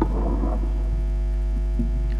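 Steady electrical mains hum in the microphone and sound-system chain: a loud low drone with a stack of fainter steady tones above it. A brief soft noise comes at the very start.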